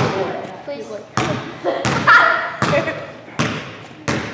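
A basketball bouncing on a gym floor, five sharp thuds about every 0.7 s, each ringing on in the hall's echo.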